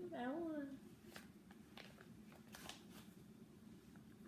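Faint scattered clicks and small scrapes from spoon-feeding a baby, over a low steady room hum.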